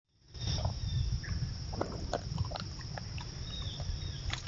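Black bear feeding at the ground, its eating noises coming as short irregular clicks and crunches over a steady low rumble. The sound fades in from silence just after the start as a new trail-camera clip begins.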